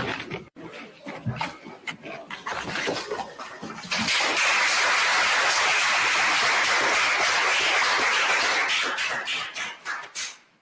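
A small group applauding: scattered claps at first, then steady clapping from about four seconds in that dies away near the end.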